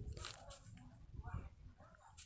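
Ballpoint pen writing on notebook paper: faint scratching strokes and small clicks.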